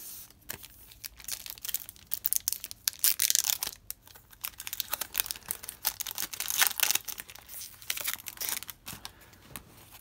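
A foil hockey-card pack wrapper being torn open and crinkled by hand: a run of sharp crackling rips and rustles, loudest about three seconds in and again near seven seconds.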